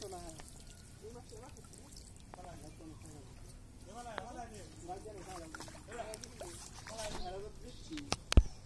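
Faint voices talking, with light sloshing of water.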